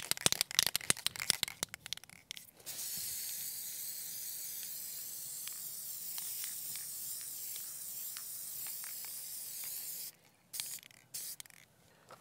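Aerosol can of Krylon 1311 matte spray: a quick run of rattling clicks for the first couple of seconds, as the can is shaken, then a steady high hiss of spray for about seven seconds, and two short puffs near the end.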